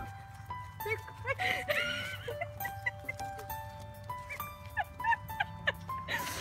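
High, pitch-bending calls from young farm animals over background music with a melody of held notes. The clearest call comes about a second and a half in, with shorter ones scattered after it.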